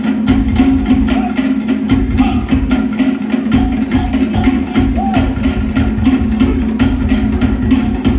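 Fast Polynesian drum music for a dance: rapid, even strikes on wooden slit drums and drums over a steady low drone.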